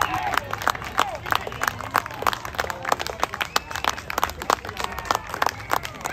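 Spectators clapping close by, sharp uneven claps several times a second, with crowd voices calling out behind them.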